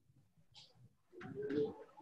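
Faint cooing of a pigeon: one low, pulsing coo a little over a second in.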